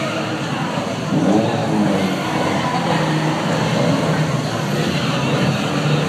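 Car engines running at a drag-racing meet, with a steady low drone and some revving, mixed with voices.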